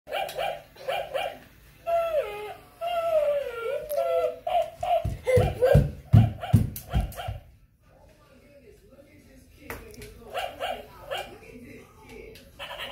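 Battery-operated plush Dalmatian toy dog on a remote-control leash, giving groups of short electronic barks. A long wavering whine comes about two seconds in, and the toy goes quieter for a couple of seconds before barking again near the end.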